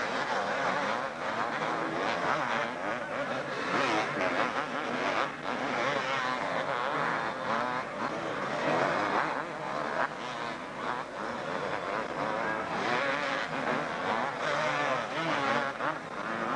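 A pack of 250cc two-stroke motocross bikes racing close together, many engines overlapping, their pitch rising and falling as the riders rev and shift through a corner.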